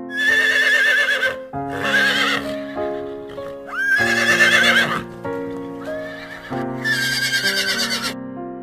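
A horse whinnying four times, each neigh high and quavering, over background music.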